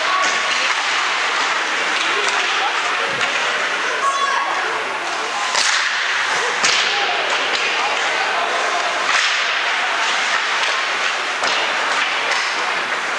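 Ice hockey play heard at rinkside: skates scraping and carving the ice with stick noise, broken by a few sharp knocks about six and nine seconds in.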